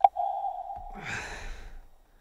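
A sharp click, then a steady tone lasting about a second, with a man's breathy laugh coming in about a second in and trailing off.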